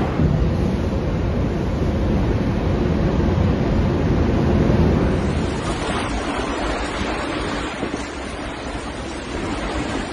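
Tornado wind rushing and buffeting a phone's microphone in a loud, steady roar of noise. About halfway through it changes character as a second recording of the same storm wind takes over.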